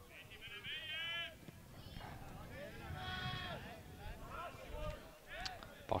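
Faint, drawn-out shouts and calls from players on a football pitch, heard twice (about a second in and again around three seconds), over the low background rumble of an open-air stadium.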